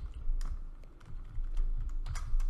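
Computer keyboard typing: a few separate keystrokes, spaced irregularly, as code is entered.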